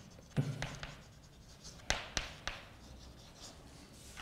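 Chalk writing on a chalkboard: scratchy strokes and sharp taps of the chalk against the board, a cluster about half a second in and three more taps around two seconds in.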